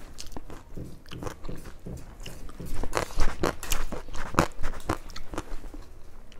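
Close-up mouth sounds of a person biting and chewing crisp fried food, with irregular crunches and a run of louder crunching about halfway through.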